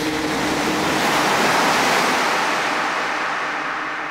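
Ocean-surf sound effect in a darkwave song's outro: a rushing wash of hiss that swells and then fades away, with faint held synth tones underneath.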